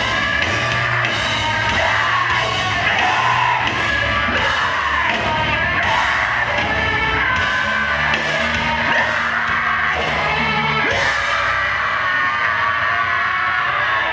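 Mathcore band playing live at full volume: distorted guitars, bass and drums with screamed vocals. It is heard from the middle of the crowd.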